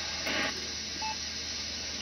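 Receiver audio from a Funcube Dongle Pro+ software-defined radio tuned to the 6-metre (50 MHz) amateur band: a steady hiss of band noise, with one short beep-like tone about a second in.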